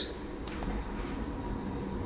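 Steady low hum of room tone, with a faint thin steady tone above it.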